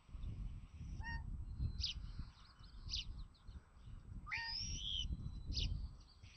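Bald eagle calls: a series of short, high chirps, with a longer call about four seconds in that glides up and then falls. A low, uneven rumble runs underneath.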